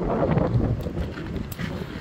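Wind buffeting a phone microphone outdoors, an even rushing noise that eases slightly over the two seconds, with a few faint clicks.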